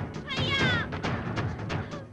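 Dramatic film background score with repeated drum hits and a high wailing sound that slides down in pitch about half a second in.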